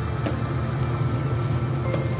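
Electric food steamer at work, water boiling underneath with a steady low rumble and a few faint clicks.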